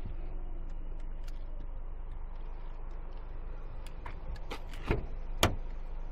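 Steady low outdoor rumble, then near the end a short click and a sharper, louder click as the driver's door latch of a Renault Megane convertible releases and the door is opened.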